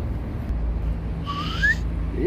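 A short whistle-like tone rising in pitch a little past the middle, over a steady low rumble.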